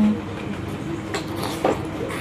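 Mouth sounds of eating ripe mango by hand: two short wet smacks or slurps about a second in, over a steady low background hum.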